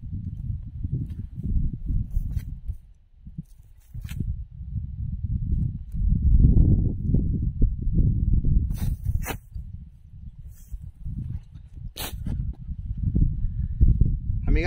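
Wind buffeting the microphone in strong gusts, a rumble that rises and falls and is loudest in the second half. A few short sharp clicks and rustles from handling a nylon cast net cut through it.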